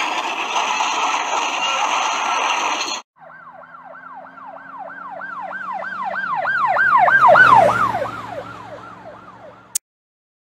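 A loud, noisy stretch cuts off suddenly about three seconds in. Then an emergency vehicle siren wails, rising and falling about three times a second. It grows louder, drops in pitch as it passes about seven and a half seconds in, and fades, ending with a click.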